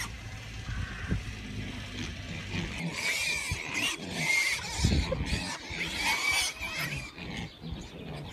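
Sows with a litter of piglets grunting, with short, high piglet squeals breaking in from about three seconds in.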